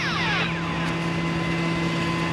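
Tow truck's engine running with a steady hum. It opens with a short falling swoosh.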